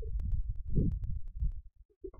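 Computer keyboard typing: a quick run of key clicks over low thumps, as a short word is typed.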